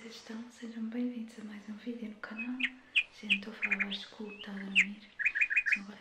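A small bird chirping: single high chirps from about two seconds in, then quick runs of three or four notes, the last run near the end, heard over a woman's low voice.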